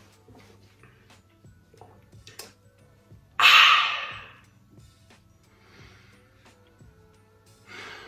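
A man's loud, breathy exclamation about three and a half seconds in, fading over about a second, as he reacts to a sip of white wine. A softer breath follows near the end, over faint background music.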